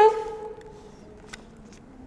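The end of a woman's sung imitation of a canary's song, 'chiddle', one held note that fades out within about half a second. Then quiet room tone with a single faint click about a second later.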